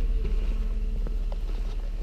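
Steady low rumble of a vehicle running and rolling slowly along a street, with a faint steady hum over it.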